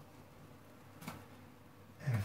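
Near silence: faint room tone, with one soft tap about a second in.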